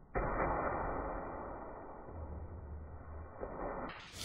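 Steady outdoor background hiss that starts abruptly and slowly fades, with no distinct impact of the bottles heard. Right at the end it gives way to a brighter hiss.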